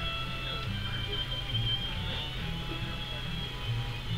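Background music: a song with a bass line stepping from note to note and no singing in these seconds.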